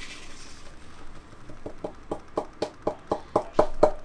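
Rapid light taps on a small container held over a ceramic pour-over dripper, knocking ground coffee out into the filter. They start about one and a half seconds in at around six a second and get faster and louder toward the end.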